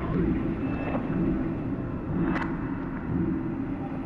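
Ambient electronic music built from processed field recordings: a steady low rumbling drone with a fluttering grain, with one sharp click about two and a half seconds in.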